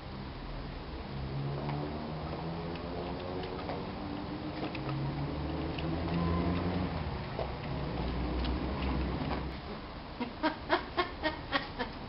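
Sewing machine running at varying speed, its motor hum rising and falling in pitch. Near the end come slow, separate needle strokes, about three clicks a second, as when a button is stitched on.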